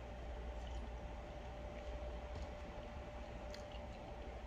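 Faint sips and swallows of a drink from a plastic cup, over a steady low hum with a faint steady tone.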